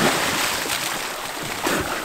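Splash of a person jumping into the sea, then the churned water hissing and settling, fading over the two seconds.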